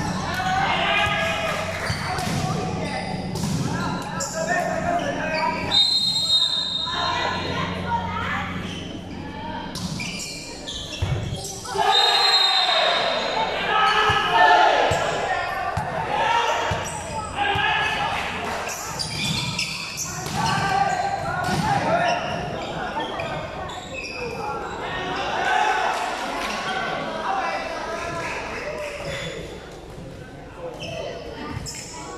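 Indoor volleyball game in a large echoing hall: players and spectators calling and chattering over one another, with the ball being struck and knocking off the court. A short high whistle sounds twice, about six and twelve seconds in.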